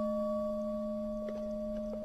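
Buddhist bowl bell ringing out after a single strike, a steady low hum with a few higher overtones fading slowly.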